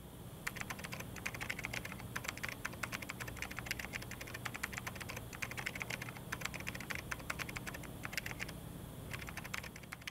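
Rapid light clicks coming in irregular bursts with short pauses, over a faint steady low hum.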